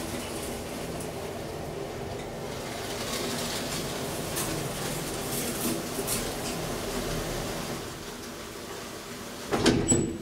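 Hydraulic elevator car travelling down the shaft with a steady hum and rumble. A few loud clunks come near the end as it reaches the bottom landing.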